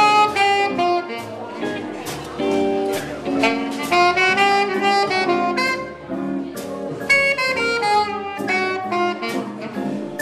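Saxophone playing a jazz melody in short, moving phrases over a backing of lower sustained chords.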